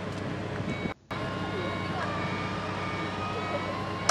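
Steady low mechanical hum from a wheelchair-lift van, broken by a brief drop-out about a second in.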